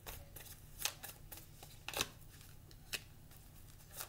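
A tarot deck being shuffled by hand: soft card-on-card rustling with three sharper snaps about a second apart.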